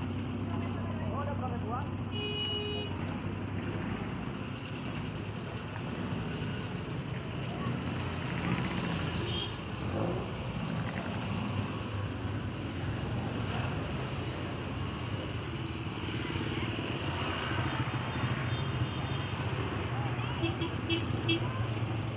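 Busy market street: motorcycle and minibus engines running under people talking. A short high toot comes about two seconds in, and a few quick beeps near the end.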